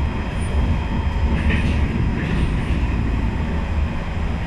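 Interior running noise of an SMRT C151 metro train in motion: a steady low rumble of the car and its wheels on the rails, heard from inside the carriage.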